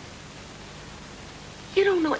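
Steady hiss of background noise on the soundtrack in a pause between lines of dialogue; a voice starts speaking near the end.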